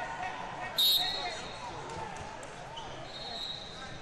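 A referee's whistle gives one short, loud, shrill blast about a second in, over the steady chatter of a crowd in a large hall; a fainter whistle from farther off sounds near the end.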